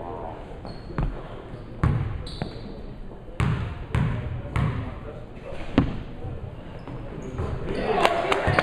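Basketball bouncing on a hardwood gym floor about six times, unevenly spaced, each bounce echoing in the hall: a player dribbling at the free-throw line before the shot.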